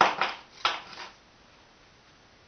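A small metal object clattering on a tabletop: two quick knocks at the start, then two more about half a second later.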